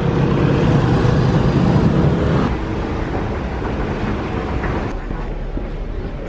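Road traffic, with a heavy vehicle's engine running as a loud low rumble for the first two and a half seconds or so, then a quieter, steady background noise.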